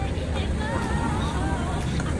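Busy outdoor street ambience: a steady low rumble under faint background chatter.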